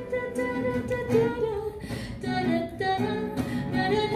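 A singer's wordless vocal melody of long held notes, accompanied by plucked acoustic guitar.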